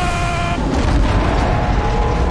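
Held orchestral notes that give way about half a second in to a loud crash with a heavy low rumble: a film sound effect of a spaceship ramming a larger alien craft.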